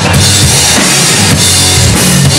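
A live rock band playing loud, with the drum kit to the fore: bass drum and cymbal hits over a steady low bass line.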